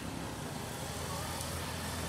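Street ambience: steady traffic noise with a faint murmur of crowd voices.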